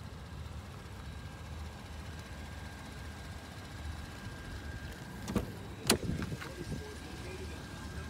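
A car's front door being opened: two sharp clicks about half a second apart as the door handle is pulled and the latch releases. A steady low hum with a faint high steady tone runs underneath.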